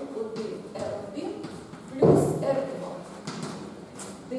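A woman speaking quietly in a large, echoing room while chalk taps and scratches on a blackboard as she writes; a louder burst comes about two seconds in.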